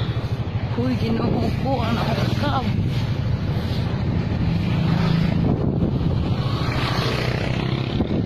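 A vehicle engine running steadily while moving, with wind buffeting the microphone. A voice speaks briefly about a second in.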